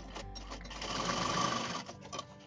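Sewing machine running in one short burst, stitching ribbon onto fabric. It picks up about half a second in and stops just before the end.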